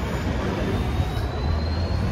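Outdoor city street noise, a steady low rumble of traffic. A faint thin tone rises slowly in pitch from about half a second in.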